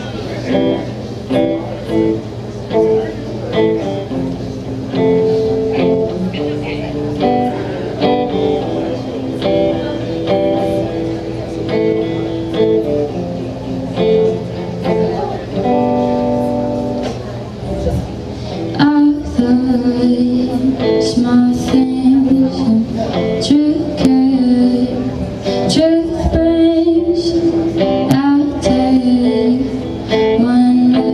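Clean electric guitar played solo, picking out notes and chords as a slow song intro, through an amplifier in a small room. About two-thirds of the way in, a woman's voice begins singing over it.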